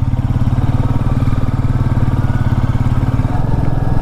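Motorcycle engine running at a steady cruising speed, heard from the rider's seat, with a fast, even pulse.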